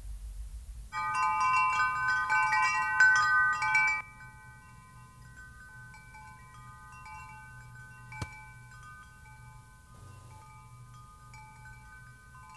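Chimes ringing: a quick, loud cascade of overlapping bright metallic tones for about three seconds, then an abrupt drop to softer, scattered chime notes that linger. A single sharp click comes about eight seconds in.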